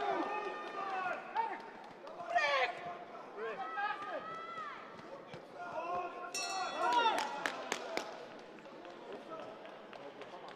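Boxing arena sounds in the closing seconds of a bout: shouting voices from ringside and sharp knocks of punches and footwork on the ring. About six and a half seconds in, a short high ringing signal sounds as the round's clock runs out, marking the end of the bout.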